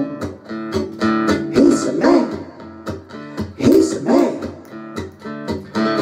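Acoustic guitar strummed in a steady rhythm of chords, an instrumental stretch between sung lines.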